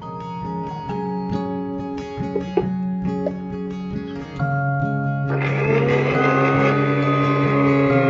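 Soft plucked-guitar background music; from about five seconds in, an electric mixer grinder runs under it, grinding boiled chickpeas in its steel jar.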